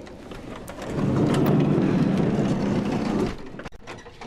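A van's sliding side door rolling shut along its track: a rumbling slide of about two seconds, then a few sharp clicks as it latches.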